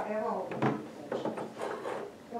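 A toddler's voice making short wordless sounds, mixed with light knocks and clicks from wooden dollhouse pieces being handled.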